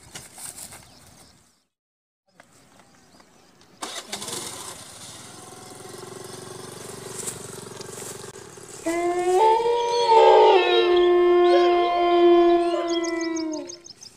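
Eerie horror sound effect: a low drone builds from about four seconds in. From about nine seconds in, loud sustained wailing tones at several pitches join it, with some sliding up and down, and they stop just before the end.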